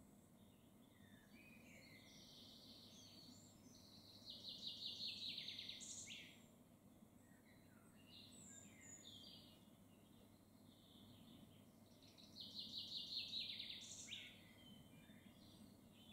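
A songbird singing: two short phrases of quick notes falling in pitch, about four seconds in and again about twelve seconds in. Faint scattered chirps in between.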